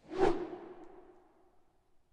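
A whoosh transition sound effect: one quick swish near the start that fades out over about a second and a half, leaving a low ringing tail.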